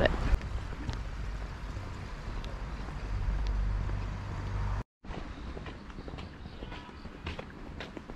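Wind rumbling on a small action camera's microphone over faint outdoor ambience. The sound cuts out for a moment about five seconds in, then goes on quieter, with a few faint ticks.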